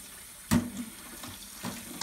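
Kitchen tap running steadily into a stainless steel sink, with one sharp clack about half a second in and a few fainter clicks after it, as kitchen shears work at a live blue crab in the sink.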